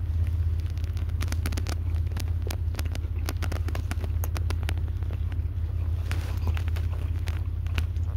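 Steady low rumble of a car heard from inside the cabin, with many short wet clicks of someone chewing a sandwich close to the microphone.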